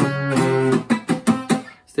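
Steel-string acoustic guitar playing a short phrase in octaves, starting on a D doubled an octave up: a ringing note followed by about five quick plucked notes that fade out near the end.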